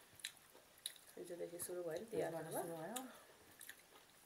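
Close-up chewing and sharp wet mouth clicks from someone eating rice and curry. About a second in, a woman's voice comes in for roughly two seconds.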